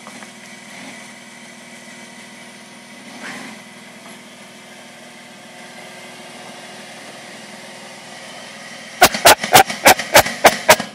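Jeep Liberty engine running steadily at low revs, a faint even hum, while the SUV crawls on a steep dirt embankment. Near the end a rapid run of loud, sharp knocks sets in, about three a second.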